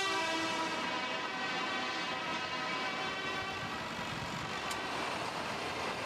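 Tractor horn held on one long note that fades out about a second in, followed by the steady noise of a tractor engine and traffic in the street.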